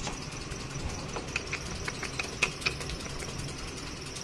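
Golden retriever chewing a plastic soda bottle: a scattering of sharp crackles and clicks from the plastic, over a steady low hum.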